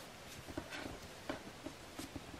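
A few faint, light taps and clicks as small craft supplies are handled on a tabletop, spaced irregularly over quiet room hiss.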